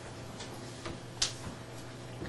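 Room tone with a steady low hum and a few faint, short clicks, the clearest about a second and a quarter in.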